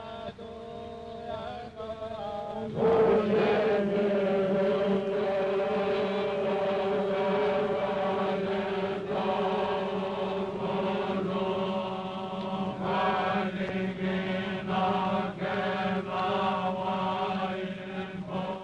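Voices chanting together on long held notes, the ceremonial chant of the Fijian yaqona (kava) mixing; it swells louder about three seconds in.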